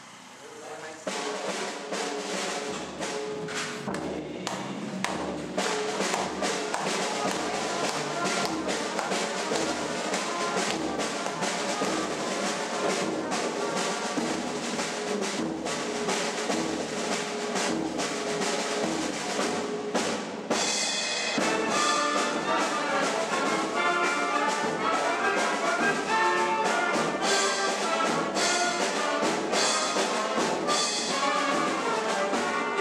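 Brass band playing a piece in rehearsal, coming in about a second in, over a steady low drum beat. About two-thirds of the way through it drops off for a moment and comes back louder and fuller.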